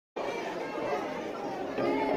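Audience chatter: many voices, mostly children's, talking at once at a steady level. It starts just after the beginning.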